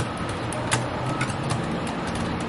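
Keyboard keys clicking irregularly, about five or six sharp clicks, over a steady low rumble of background noise.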